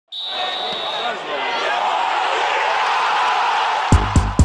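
Voices over a loud, noisy background, with a thin steady high tone in the first second. Electronic music with a regular beat starts right at the end.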